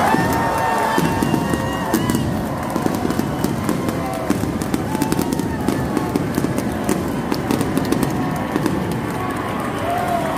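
Stadium fireworks going off in rapid, irregular pops over the chatter of a ballpark crowd, set off to celebrate a home-team win.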